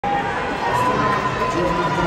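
Steady hubbub of a large crowd, with many voices talking and calling out at once, echoing in a big indoor track arena.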